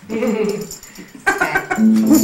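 A person's brief wavering, whimper-like vocal sound, then a little chatter, and near the end an electric keyboard starts a long held note.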